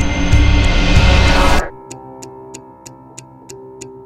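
Heavy stoner rock with fuzzed guitars, bass and drums, played by the full band, stops abruptly about a second and a half in. A quiet passage follows: soft held notes under a steady high tick, about four a second.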